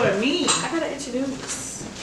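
A few clinks of pots and pans in a kitchen, with a quiet voice under them.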